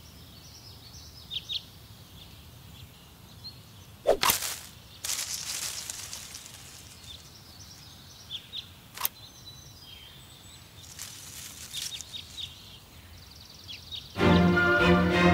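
Manual hedge shears snipping a few times, the sharpest and loudest cut about four seconds in and another about nine seconds in, with a longer rustle of foliage between them. Faint bird chirps sound over a steady outdoor background.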